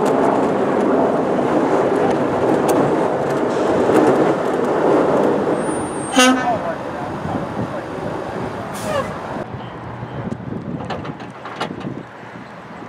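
Snowplow dump truck's engine running as it drives slowly, with a short pitched tone about six seconds in; the sound grows quieter from about nine and a half seconds on.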